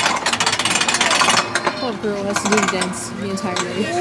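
A fast, even rattling clatter for about the first second and a half, then people's voices.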